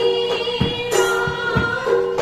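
Group devotional singing of an Assamese borgeet in raga Mallar, with voices holding long notes over a harmonium. Barrel drums (khol) strike a steady beat of about three strokes a second.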